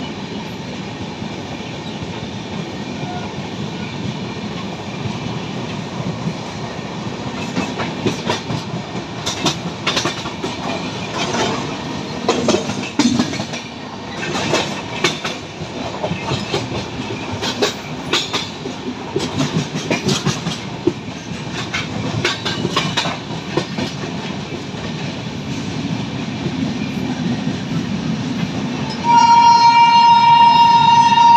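Rajdhani Express coach rolling through a junction yard: a steady running rumble with a run of clicks and knocks from the wheels crossing points and rail joints. Near the end a loud, steady-pitched train horn starts.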